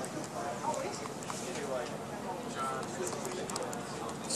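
Indistinct voices talking in the background, with a few light clicks near the end.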